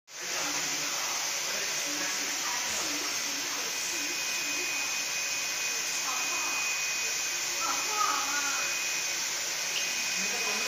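UV LED flatbed printer running as it prints, a steady airy whoosh like a blower or fan. A thin high whine joins about four seconds in.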